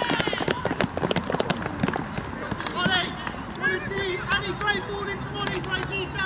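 Scattered hand clapping from a few people for the first two seconds, then several voices calling out and cheering, celebrating a goal just scored.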